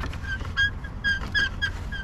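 A small bird chirping repeatedly in short, high notes of the same pitch, about five a second, over a steady low rumble.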